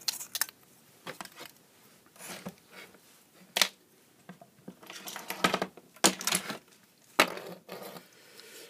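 Scattered clicks and knocks of small tools and a plastic LED lamp base being handled and put down on a workbench, one sharper click about halfway through.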